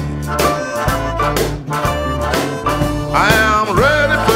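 Electric Chicago blues band playing between sung lines, with a steady bass riff and a harmonica that bends its notes up and down in the last second.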